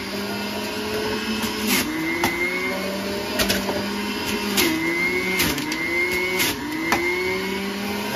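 Centrifugal juicer's motor running at high speed, its pitch dipping four times as produce is pressed down the feed chute and climbing back as it spins up again. Sharp clicks are scattered through it.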